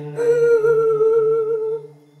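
Background score: a single hummed vocal note, held for about a second and a half with a slight waver, over a low bowed-string drone, then breaking off near the end.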